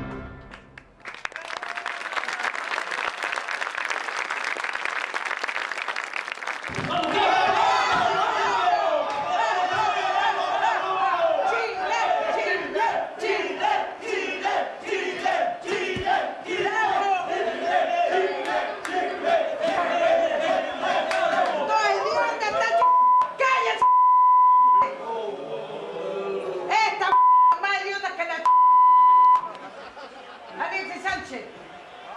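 Crowd noise with many voices shouting together over music. Near the end a steady high beep cuts in several times, in the way a censor bleep covers words.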